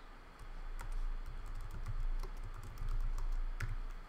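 Typing on a computer keyboard: an irregular run of quick keystrokes deleting and retyping a short text entry, over a low steady hum.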